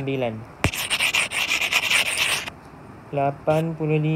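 A scratchy rubbing noise lasting about two seconds, from a hand sliding across the iPad's glass screen while the worksheet view is zoomed in.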